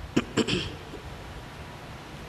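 A pause between spoken sentences: two brief mouth clicks and a short breath in the first half second, then steady low room noise.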